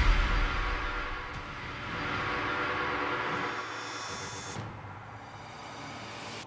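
Music and sound effects of a TV show's graphic transition: a loud musical hit fades out over the first second, then a swelling whoosh with sustained tones cuts off sharply about four and a half seconds in.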